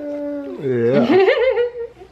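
A baby vocalizing: a held whiny note, then a long wavering, warbling wail that dips low and climbs back up, fading near the end.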